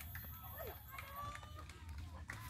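Faint, distant voices talking and calling out, over a low steady rumble on the microphone.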